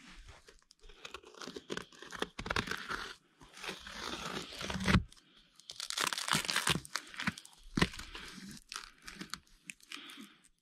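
Tape wrapping on a parcel being slit and torn open with a Spyderco Tenacious folding knife: irregular crinkling and ripping, the loudest rip about five seconds in.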